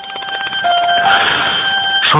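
A bell ringing rapidly and continuously, its rapid hammer strikes blending into a steady ringing tone, growing louder over the first second.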